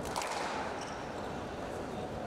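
A single sharp hit of a squash ball, ringing briefly in the glass-walled court just after the start, over a steady hall murmur.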